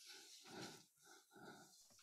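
Near silence on an online meeting's audio, with a few very faint short sounds in the first half-second and again about a second and a half in.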